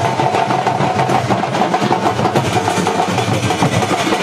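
Loud, fast drumming that runs on without a break, with a held melodic line over it.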